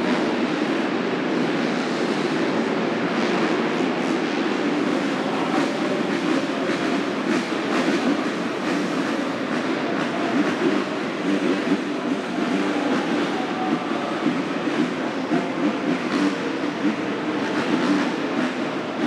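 Many dirt-bike engines running at once at a supercross starting line, a dense steady rumble with short throttle blips that come more often near the end.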